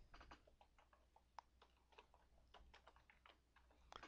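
Faint computer keyboard typing: a short run of soft key clicks as a file name is keyed in.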